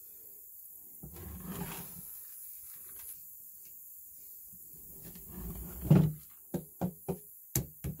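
Hands handling a large hollow plastic skull prop: rubbing and shifting, a heavy thump about six seconds in, then a quick run of sharp clicks near the end.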